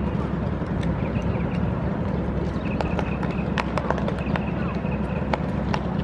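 Drill team marching on asphalt: irregular sharp heel strikes and clicks, a few a second, over a steady low background rumble.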